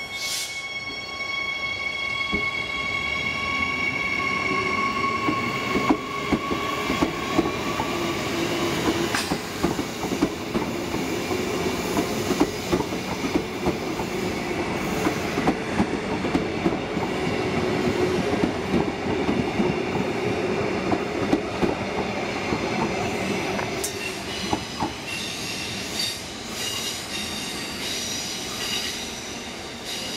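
Queensland Rail electric multiple-unit train passing close by, its wheels clicking over the rail joints under a steady rumble. A high squealing tone sounds at the start and fades away over about eight seconds, and more high squealing tones come in near the end.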